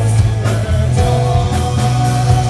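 Rock band playing live: electric guitars, keyboard and drums over a steady bass line, with regular drum and cymbal strikes keeping the beat.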